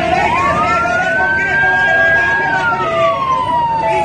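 Emergency vehicle siren wailing slowly: its pitch rises early on, holds for about two seconds, then falls gradually toward the end, over people's voices.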